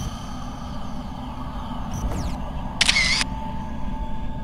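Sound-design effects under animated title cards: a steady low drone, with a short bright burst of noise about three seconds in, followed by a thin steady high tone.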